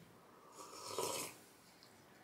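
A soft, brief slurp of hot soup sipped straight from the cup.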